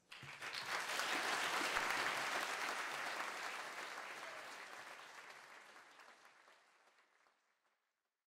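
Audience applauding: the clapping starts right away, is loudest in the first few seconds, then fades away over the last few seconds.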